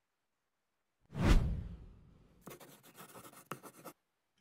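Intro sound effects of a short promotional video: a sudden deep whoosh-like hit about a second in that fades over about a second, then about a second and a half of scratchy pen-on-paper writing sound as handwritten title lettering appears.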